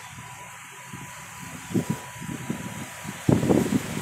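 Steady outdoor background noise, with low bumps about two seconds in and a louder run of them near the end.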